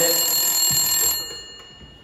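Telephone ringing: one long steady ring that stops about a second in and dies away.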